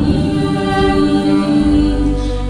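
A voice holding one long sung note over acoustic guitar in a live song performance.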